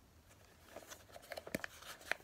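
Long fingernails clicking and scraping on a small cardboard box as it is handled and turned over: a string of short, light taps starting under a second in, one sharper tap near the middle.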